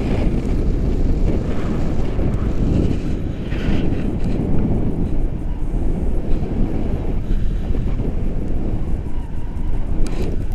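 Wind rushing and buffeting over a camera microphone in paraglider flight: a loud, steady, fluttering roar heaviest in the low end.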